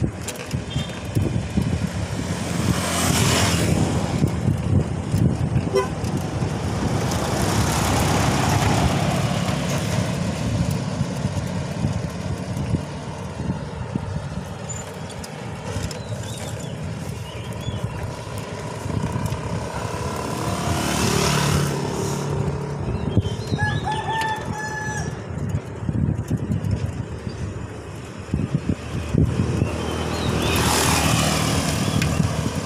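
A steady rumble of wind and road noise while riding, with motor vehicles passing several times: near the start, about a quarter of the way in, and about two-thirds of the way through. A rooster crows briefly a little past three-quarters of the way in.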